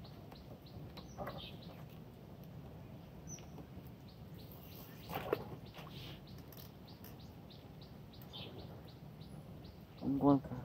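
A bird chirping over and over, about four short high notes a second, faint over a low outdoor background. A single brief knock comes about five seconds in.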